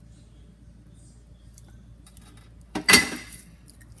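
Dishware clattering once against a hard surface, a sudden loud clink with a short ringing tail, about three seconds in; only faint handling sounds before it.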